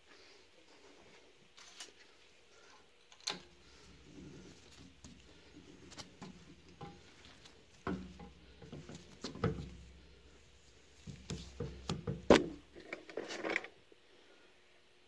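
Scattered metal clinks and knocks as steel seat-cutting tooling is handled and fitted into a valve guide of a cast-iron small-block Chevy cylinder head. The loudest knock comes near the end, among a quick run of clicks.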